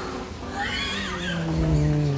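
A man's wordless vocal sound after a fluffed take: a high, wavering whine, then a long, steady, low drawn-out groan of frustration.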